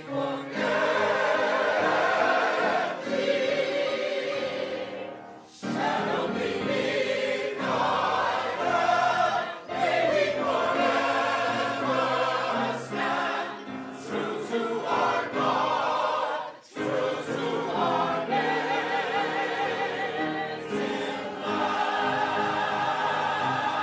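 Mixed choir of men's and women's voices singing in parts, accompanied by piano. The singing runs in long phrases with brief breathing pauses about five and a half and seventeen seconds in.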